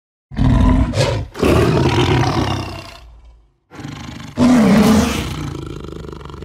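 Big cat roar sound effect, heard twice: a long roar starting just after the beginning and fading by about three seconds, then after a short silence a second roar about four seconds in that fades out toward the end.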